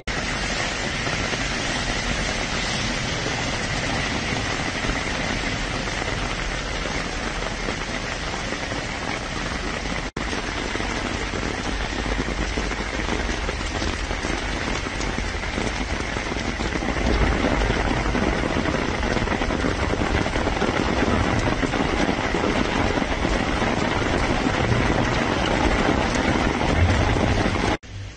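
Steady rain falling on a street awash with hailstones and meltwater, a continuous even hiss. It briefly cuts out about ten seconds in and is a little louder in the second half.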